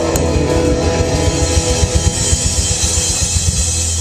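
Live rock band playing loud: electric and acoustic guitar chords over rapid drum hits. Shortly before the end the drumming stops, leaving a held chord. The sound is rough, taken on a cheap camera.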